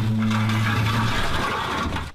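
A small ride-on scooter's motor hums steadily at a low pitch, cutting out about a second in, over a rough rushing noise of wheels rolling on pavement. The noise drops away suddenly near the end.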